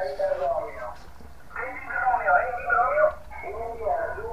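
A voice from an HF amateur band, heard through a small radio receiver's speaker. It sounds thin and telephone-like, with a short pause about a second in.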